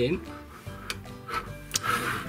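Background guitar music with a few short clicks of small plastic Playmobil toy parts being handled, the sharpest near the end.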